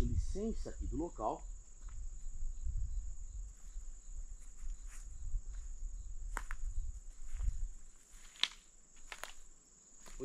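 Night insects singing in a steady high-pitched drone. A voice is heard briefly in the first second or so, a low rumble runs under most of it, and a few sharp clicks come in the last few seconds.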